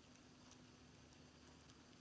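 Near silence: faint room tone with a low steady hum and a few faint ticks.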